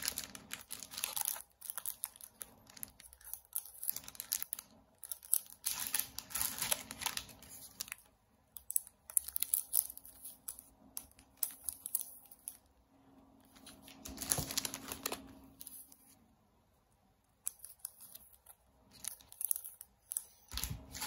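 Clear plastic sleeves around bundles of banknotes crinkling and rustling as they are handled, in irregular bursts with a short lull near the end.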